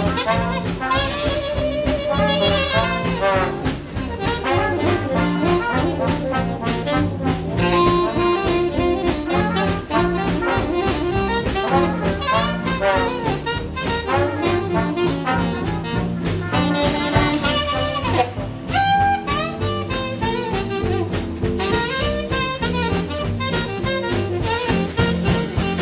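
Live Dixieland jazz band playing a swing tune: tenor saxophone, trumpet and trombone over a rhythm section with drums, at a steady beat.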